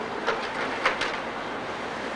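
Slide projector changing slides: a steady running hum and hiss, with two sharp clicks about a third of a second and about a second in as the slide is swapped.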